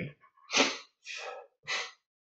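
A man making three short, breathy bursts into his cupped hand, the first the loudest.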